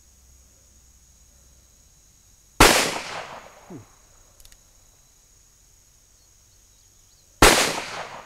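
Two shots from a Smith & Wesson Model 10 .38 Special revolver, about five seconds apart. Each is a sharp crack followed by an echo that dies away over about a second.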